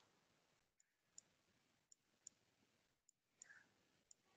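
Near silence with about six faint, sharp clicks spread through it, the clicks of a computer input device as shapes are drawn on a digital whiteboard.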